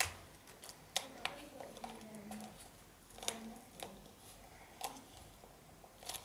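Hands pressing duct tape around the spout of a plastic funnel and handling the funnel: a few faint crinkles and clicks, spaced a second or so apart.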